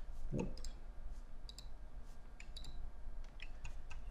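Computer mouse clicking: scattered single clicks, some in quick pairs, over a low steady hum.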